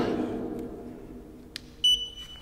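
A single click, then about two seconds in a short high-pitched electronic beep from the Lou Board 3.0 electric skateboard's remote control system. The beep tells that the board's electronics are still alive after the abuse.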